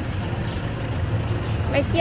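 A steady low rumble of outdoor background noise, with a woman's voice starting near the end.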